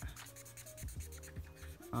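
Marker tip scratching and rubbing on paper as an area is coloured in, with faint background music underneath.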